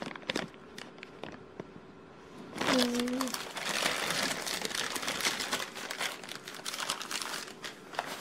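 Sealed plastic toy bag crinkling as it is handled, faint at first and then crinkling steadily from about three seconds in.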